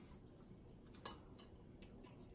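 Near silence: room tone, with one faint click about a second in and a couple of fainter ticks after it.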